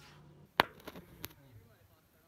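A few sharp knocks: a loud one about half a second in, then two fainter ones within the next second, after a low hum that stops just before the first.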